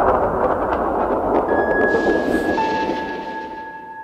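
Soundtrack sound design: a loud hissing wash of noise fades out slowly. Two sustained bell-like tones enter, one about a second and a half in and a lower one about two and a half seconds in.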